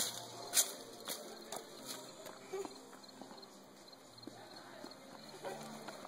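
Footsteps of hard-soled shoes clicking on a paved path, about two steps a second, loudest in the first couple of seconds and then fading. Faint voices come in near the end.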